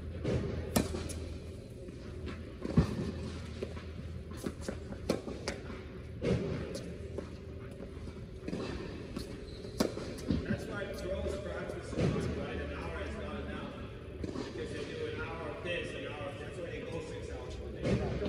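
Tennis balls struck by racquets and bouncing on an indoor hard court: single sharp pops every second or few, the loudest about three seconds in, echoing in a large hall. People talk in the background through the second half.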